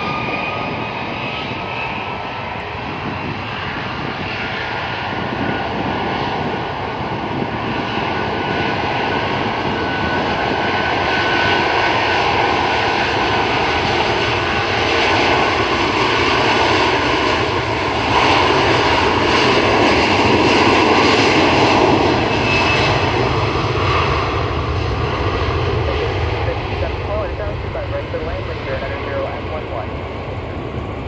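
Jet engines of a twin-engine widebody airliner running at high power as it rolls down the runway, with a steady whine over a broad roar. The sound builds to its loudest a little past the middle as the aircraft passes, then fades as it moves away.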